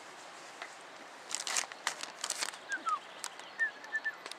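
Crinkling, crackling rustle in several short bursts about a second in, then a few faint, short, high chirps of small birds near the end.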